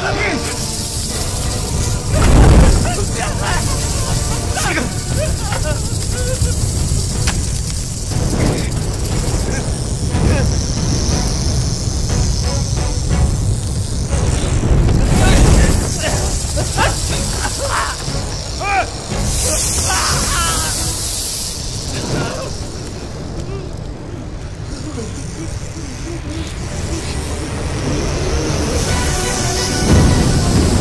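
Action-film soundtrack: tense music under wordless yells and grunts, with two heavy booming hits, one about two and a half seconds in and one about fifteen seconds in.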